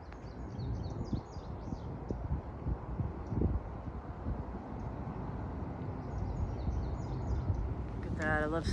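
Outdoor ambience on a wooded hilltop: a low rumble of wind on the microphone, with a small songbird singing quick, high chirping phrases twice, once in the first two seconds and again near the end.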